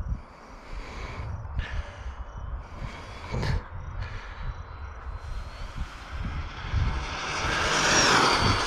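Traxxas XO-1 RC car's brushless electric motor and tyres on asphalt during a high-speed run: a faint rising whine as it approaches, growing steadily louder and loudest as it passes close near the end.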